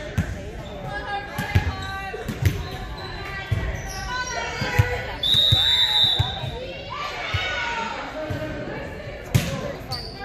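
Scattered ball thuds and knocks echoing in a gym amid players' chatter. About five seconds in, a referee's whistle gives a steady one-second blast to start the serve, and near the end comes a sharp smack, the ball being hit.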